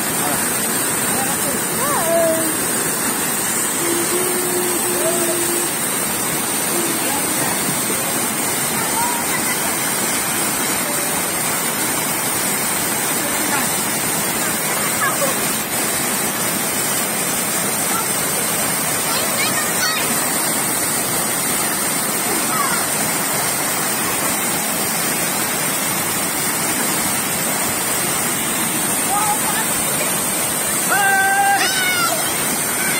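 Small waterfall pouring over rock into a shallow pool and crashing onto people standing under it: a steady, unbroken rushing of water.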